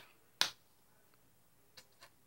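A single sharp click about half a second in, then a much fainter tick near the end, as a hand handles a paint palette on a tabletop; otherwise very quiet room tone.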